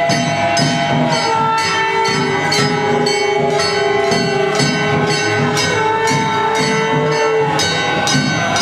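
Gavari folk music: metal percussion struck in an even beat about twice a second, ringing like bells, under long held melodic notes that step from pitch to pitch.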